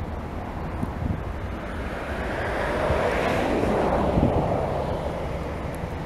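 Twin Rolls-Royce Trent 892 turbofans of a Boeing 777-200ER at takeoff thrust, a broad jet noise that swells to its loudest about three to four seconds in and then eases, its pitch sliding down as the aircraft lifts off and climbs away. Wind buffets the microphone now and then.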